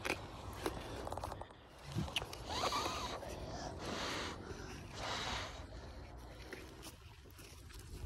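Faint rustling and scraping in several short bursts of about half a second each, the sound of hands and feet moving around, with faint voices.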